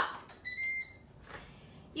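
Ninja Foodi 2-Basket Air Fryer's control panel giving one steady beep of about half a second, starting about half a second in, as the start button is pressed to begin the cook.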